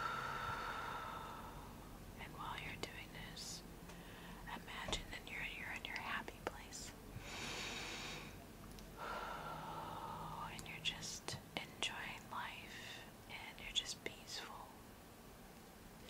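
Slow, deep breaths close to the microphone, part of a guided cleansing-breath exercise: a long exhale, then a drawn-in breath and another long exhale. Soft whispering comes between the breaths.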